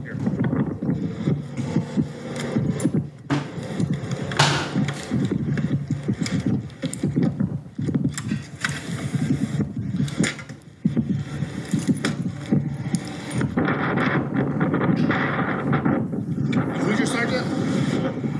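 Indistinct speech from police body-camera footage of a roadside stop, picked up by the body-camera microphone, with a brief sharp noise about four seconds in.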